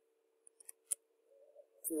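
A few computer keyboard keystrokes, short sharp clicks between about half a second and a second in, over a faint steady hum.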